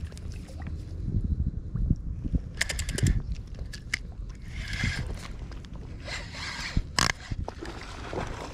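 A spinning rod and reel being handled: a quick run of clicks about two and a half seconds in, two rasping bursts like a reel being wound, and a sharp knock about seven seconds in, over low rumbling handling noise on the microphone.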